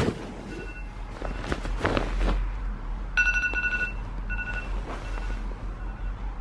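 Smartphone alarm going off in repeating short bursts of a bright electronic tone, loudest about three seconds in. There are a few soft rustles of bedding among the bursts.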